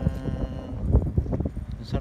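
A person's drawn-out, wordless voice, pitched and held at the start with shorter fragments after and a brief rising sound near the end, over a steady low rumble on the microphone.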